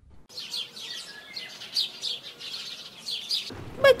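Small birds chirping in a run of short, high, repeated calls. Near the end a low rumbling noise comes in.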